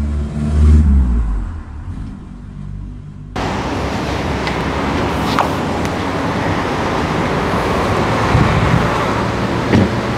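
A car engine runs with a low hum, loudest about a second in and fading over the next two seconds. Then the sound cuts abruptly to a steady wash of outdoor traffic noise.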